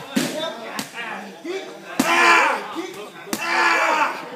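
Muay Thai strikes landing with sharp smacks, four in all, the loudest about halfway through. Right after each of the last two, a voice calls out in a long held shout.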